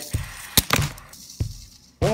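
Die-cast toy car dropped onto a spinning plastic fidget spinner: one sharp clack of the impact about half a second in, then a lighter click just under a second later.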